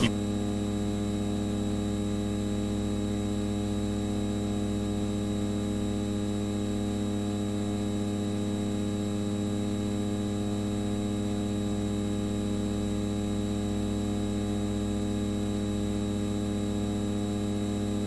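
Steady electrical mains hum, a buzz with many overtones that does not change.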